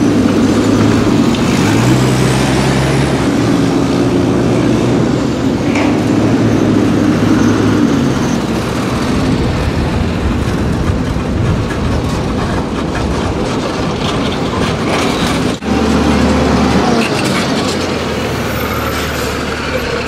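RG-31 mine-protected armoured truck driving, its engine droning steadily under loud road and cabin noise. The sound dips briefly about three-quarters of the way through, then carries on.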